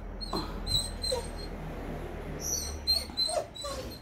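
Small long-haired dog whimpering at a closed door in a series of short, high whines, excited and waiting for its owner to come home.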